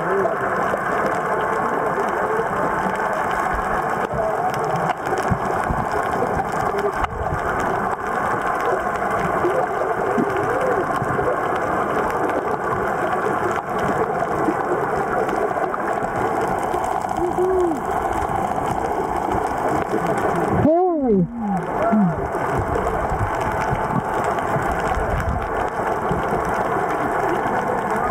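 Steady underwater hum and hiss picked up by a submerged camera. A few short, muffled vocal squeals from a snorkeler through the snorkel break in, the clearest one falling in pitch about three-quarters of the way in.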